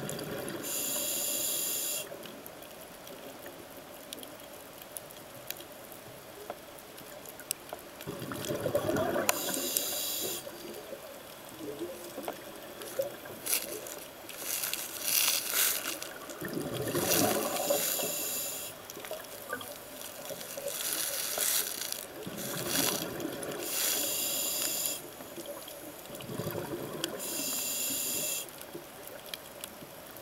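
A diver breathing through a scuba regulator underwater: hissing inhalations alternate with bubbling exhalations, several breaths in a steady rhythm a few seconds apart.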